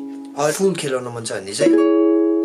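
Ukulele chord ringing and fading out, then about a second and a half in a new chord, a C# minor barre shape, is strummed and rings on.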